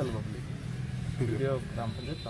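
A man speaking in short bursts over the steady low hum of a vehicle engine running.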